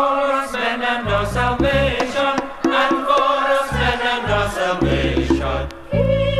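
Choir singing a Caribbean gospel Mass setting in chant-like lines, with bass notes coming and going underneath.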